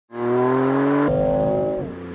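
Car engine accelerating hard, its pitch climbing steadily, with a gear change about a second in, then the revs dropping off near the end.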